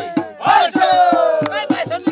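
Group of men singing and shouting a Rabha folk song together over a quick, steady drum beat of about four strokes a second. One voice holds a long, slowly falling cry through the middle.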